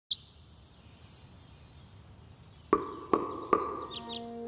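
Cartoon forest ambience: a short, sharp bird chirp at the very start and faint chirps after it. Near the end come three sharp, evenly spaced wooden knocks, each with a brief ringing tone, about 0.4 s apart.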